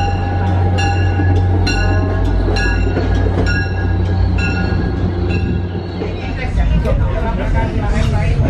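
MBTA commuter rail train arriving at a station platform: a low, steady diesel rumble with the train's bell ringing about once a second, around seven strikes. About six seconds in the bell stops and the sound changes to the train running along the track.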